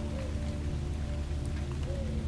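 Background music: a steady low drone with a faint, slowly wavering tone above it.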